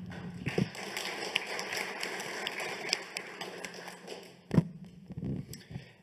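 Handling noise from a microphone being passed from one speaker to the next: rustling and scraping with small taps, then a sharp knock about four and a half seconds in.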